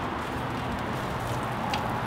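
Steady outdoor background noise with no distinct events, and a faint click near the end.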